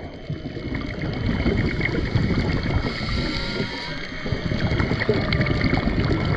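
Underwater ambience over a coral reef: a steady dense crackle and rush of water, with faint long drawn-out tones of distant whale song in the background.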